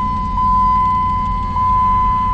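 A steady high-pitched electronic tone with a tiny blip about once a second, over a low rumble in a car cabin.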